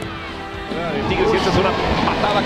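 Background music, joined a little before halfway by a television match commentator's excited voice calling the play over it.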